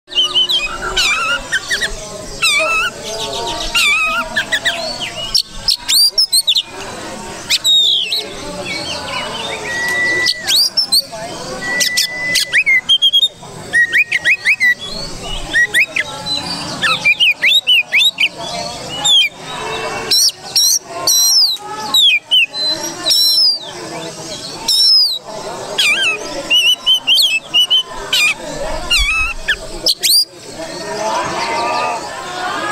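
Oriental magpie-robin singing a loud, varied song of quick whistled notes, slurs and sharp clicking notes, with a few long, level whistles partway through.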